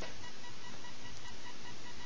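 Steady background hiss with a faint, thin, unchanging electronic tone; no distinct handling or other sounds stand out.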